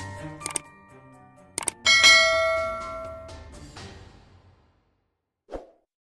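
Outro jingle: mallet-like notes fade out, then two sharp double clicks, then a bright chime struck about two seconds in that rings and dies away over a couple of seconds. A short soft blip follows near the end.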